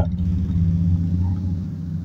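A steady low rumbling hum, easing slightly toward the end.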